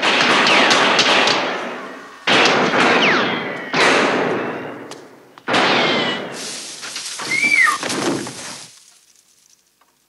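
A series of loud gunshots from a film soundtrack, played over the hall's speakers, each with a long echoing tail, coming about every second and a half and dying away near the end.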